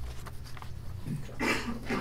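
Steady low room hum, with a person saying "okay" in the second half.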